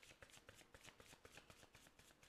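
A tarot deck being shuffled by hand: a quick, even run of faint card clicks, about eight a second.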